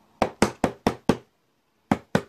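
A quick run of five sharp knocks on a hard surface, about five a second, then a pause and two more knocks near the end.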